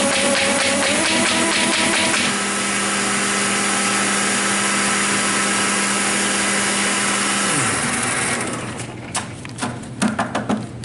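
Baum 714 Ultrafold XLT air-feed paper folder running, its motor and vacuum pump humming. For about the first two seconds sheets feed through with a fast, even clatter. The machine then runs on steadily, and near the end the hum falls in pitch as it winds down. It gives way to a few sharp clicks and paper rustles as the folded stack is handled.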